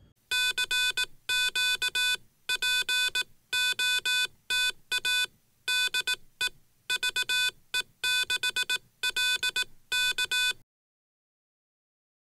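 Morse code sent as a buzzy electronic tone, keyed in short and long elements with uneven gaps for about ten seconds before it stops.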